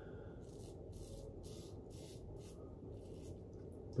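1930s Barbasol safety razor with a Feather blade scraping through lather and stubble on the neck: a faint series of short strokes, about two a second.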